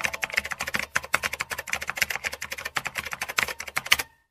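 Keyboard typing sound effect: rapid, irregular key clicks, several a second, that stop abruptly at the end.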